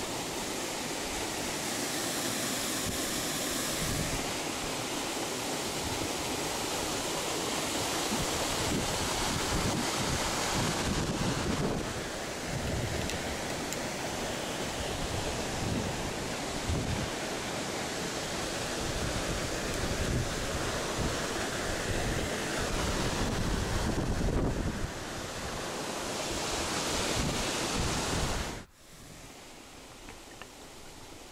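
Steady rush of water spilling over a small weir into a creek, with wind gusting on the microphone; the sound cuts off sharply near the end.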